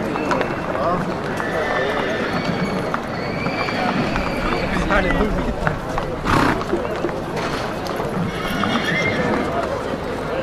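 Many people talking at once in a horse market, with a horse whinnying in high pitched calls and scattered hoof knocks. A short, loud rush of noise comes just past the middle.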